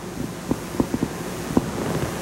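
Low rumbling background noise of a recording in a meeting room, with a few soft knocks, the loudest about a second and a half in.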